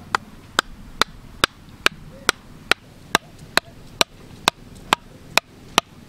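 A PVC pipe struck on its top with the back of a machete in a steady rhythm, about two ringing knocks a second, fourteen in all, driving the pipe upright into the mud of a shallow channel.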